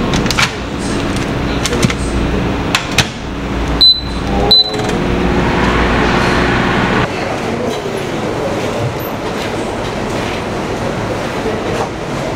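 A Panasonic commercial microwave oven: door clicks and latches shut, two short high keypad beeps about four seconds in, then the oven running with a steady low hum for a few seconds.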